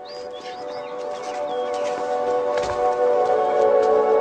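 Ambient background music fading in with long held chords, growing steadily louder; birds chirp over it in the first second or two.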